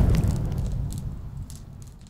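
Tail of a fiery logo sound effect: a low rumble fading steadily away, with scattered crackles over it.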